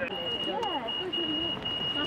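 Pedestrian crossing signal beeping, a rapid run of high pulses at one steady pitch that signals it is safe to cross, with women's voices under it.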